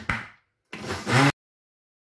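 A plastic blender lid clicks as it is pressed into place, then the blender motor starts up on the thick peach and condensed-milk mixture, running for about half a second before the sound cuts off suddenly.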